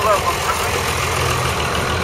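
Vintage tractor engine idling steadily, with voices in the background.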